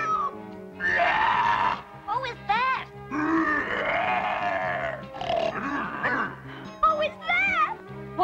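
A cartoon monster's voice crying out in two long calls, with shorter cries between them, over steady background music: the Marsh Monster, awakened and approaching.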